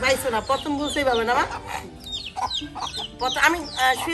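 Chickens clucking over and over, mixed with women's voices.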